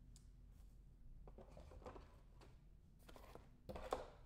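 Near silence with a few faint clicks and rustles, and a sharper click just before the end: light handling noise at a table.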